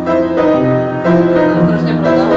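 Keyboard playing a piano-sounding instrumental introduction of held chords that change about every half second, before the singing comes in.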